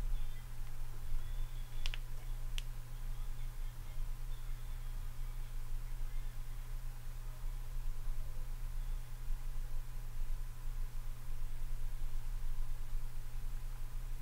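Steady low electrical hum, with two sharp computer-mouse clicks about two seconds in.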